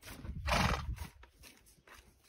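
A mare gives one short, breathy snort about half a second in, the loudest sound of the moment.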